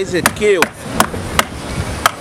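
Four sharp chopping strikes, evenly spaced about 0.4 s apart: a knife cutting through fish on a hard fish-cleaning table.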